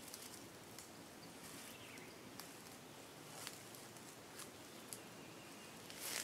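Near silence: faint outdoor ambience with a few soft, scattered ticks and rustles.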